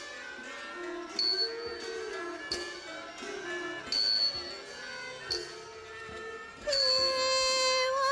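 Thai classical ensemble playing a slow melody for dance, with a ringing small-cymbal stroke marking the beat about every 1.3 seconds. A louder held note comes in near the end.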